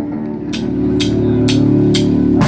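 Live rock band: electric guitar and bass holding a ringing chord while a cymbal is tapped about twice a second.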